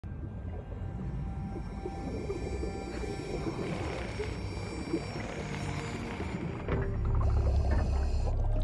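Film score with held tones over murky underwater sound effects; a deep rumble comes in about seven seconds in and grows louder.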